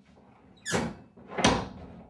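Heavy wooden door being shut: two loud bangs under a second apart, the second the louder.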